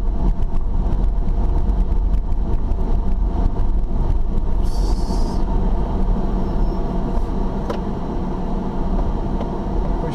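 Car driving slowly on a rough dirt road, heard from inside the cabin: a steady low engine and tyre rumble with scattered small knocks from the uneven surface. A brief high hiss comes about five seconds in.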